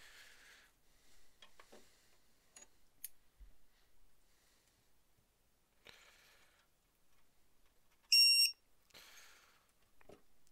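A short, high electronic beep, under half a second, from the power distribution board's alarm buzzer as a 3-cell LiPo battery is plugged in. Before it come soft rustles and clicks of the leads being handled.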